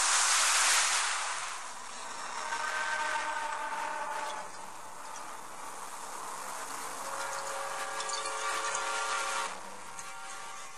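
A sound effect of a loud rushing splash-like noise that eases into a long hiss, depicting a plunge into a deep well, with sustained eerie drone tones layered over it from a couple of seconds in.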